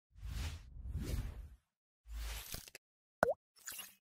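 Animated logo-intro sound effects: two swelling whooshes, then a short, loud pop whose pitch dips and bends back up, followed by a brief sparkling shimmer.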